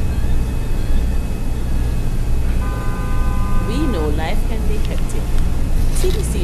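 A car horn sounds once for about a second and a half around the middle, over a steady low rumble.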